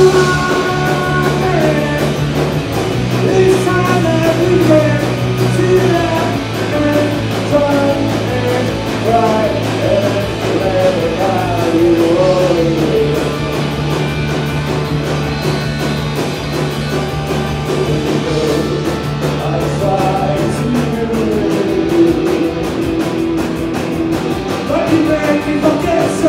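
Live rock band playing through a club PA: electric guitars, bass guitar and drum kit, with a man singing the melody over them. The bass holds long notes that change every few seconds as the chords move.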